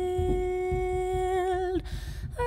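A woman's voice holds one long, plain note that wavers slightly and falls away just before the end, over soft, irregular low knocks from a pianist tapping the closed piano.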